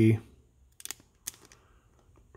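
A few short, faint crackles of a plastic trading-card pack wrapper being handled in the fingers.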